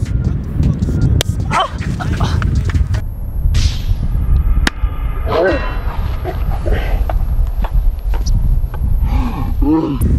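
A single sharp hand slap on the back of a man's neck about a second in, followed by cries and laughter from two men over a steady low rumble.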